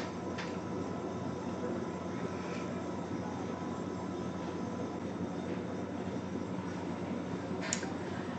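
Room tone: a steady low hiss with a faint electrical hum, broken only by a couple of faint clicks, one just after the start and one near the end.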